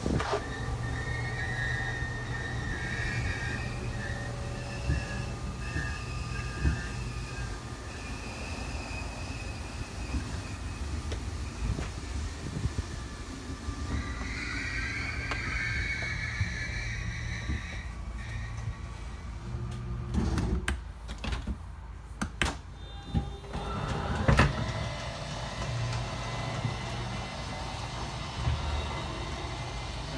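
Electric slide-out mechanisms of a fifth-wheel travel trailer running as the slide rooms extend: a steady low mechanical drone with a whine. A run of clicks comes about two-thirds of the way through, the clicking that signals a slide is all the way out.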